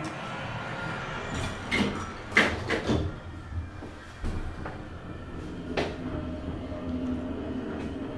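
Passenger elevator doors sliding shut with several clunks and knocks about two seconds in, a single knock near six seconds, then a low steady hum as the car runs.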